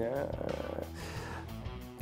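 A man's voice trailing off in a drawn-out hesitation sound that fades over the first second, over quiet background music.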